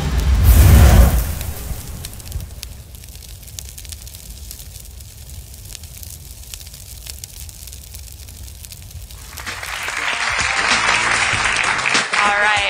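Cinematic logo sting: a deep boom and whoosh in the first second, settling into a quieter low rumble. About two and a half seconds before the end, studio audience applause and cheering rises.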